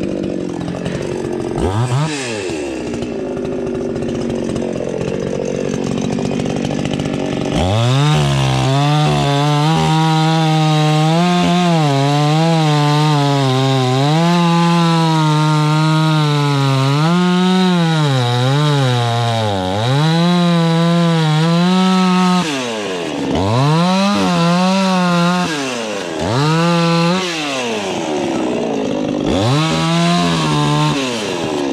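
Two-stroke chainsaw cutting through logs: running lower at first with a brief rev about two seconds in, then held at full throttle from about eight seconds, its pitch sagging and recovering as the chain loads up in the cut. Near the end it is blipped several times, each rev falling quickly back.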